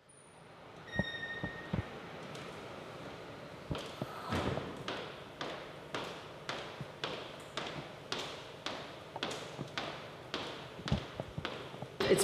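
Footsteps of a man in shoes walking across a hard tiled floor, evenly paced at about two steps a second, beginning about two seconds in. A few soft thuds and a brief high tone come just before the steps start.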